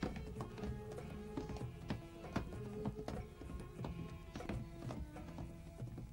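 Quiet film-score music with held tones, scattered with short, irregular knocks and taps.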